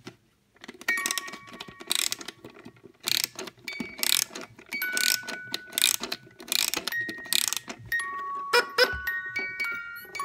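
Fisher-Price Quacking Duck cot toy being wound by hand: a ratcheting click with each twist of the winder, in strokes about once a second, while its music box plinks scattered notes. Near the end the notes come closer together as the tune starts to play.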